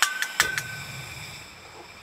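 Portable butane canister stove being lit: about four sharp clicks from the igniter in the first half second, then the burner catches and the gas flame runs with a low, steady rush.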